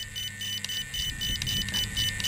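Radio-control transmitter's key beeps: a rapid, even string of short high beeps, about six or seven a second, as the throttle travel-adjust value is stepped down, over faint handling noise.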